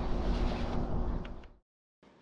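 Outdoor ambient noise, mostly wind rumble on the microphone, under a faint steady hum with a couple of light clicks; it fades out about a second and a half in, then the sound cuts to silence.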